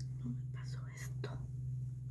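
A woman whispering softly, with a few faint clicks, over a steady low hum.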